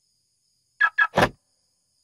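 A car door lock working: two quick sharp clicks followed by a heavier thunk, about a second in.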